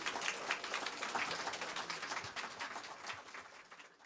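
Small audience applauding, a dense patter of hand claps that fades out near the end.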